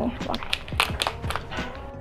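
Small cardboard lipstick box being pulled open by hand, a handful of short, sharp clicks and crackles from the packaging.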